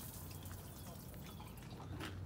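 Water trickling and dripping from a pump-fed faucet into a small stainless steel sink, faint, with a steady low hum underneath.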